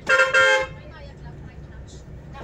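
Bus horn giving two short toots in quick succession, over the bus engine's steady low drone.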